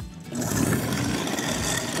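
Sink food-waste disposal unit switched on about a third of a second in, its motor running steadily while water from a garden hose pours into the drain.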